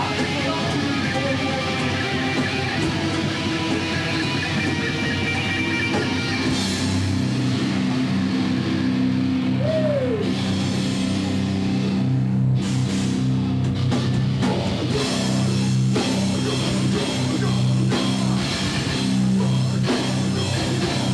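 Loud live heavy rock band playing: distorted electric guitars, bass and drum kit. About six seconds in, the band moves into a heavier section of held low chords.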